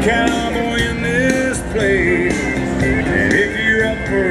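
A live band playing country-rock music with guitar, steady and loud throughout.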